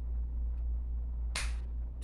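Room tone: a steady low hum, with one short, sharp hissing burst about a second and a half in.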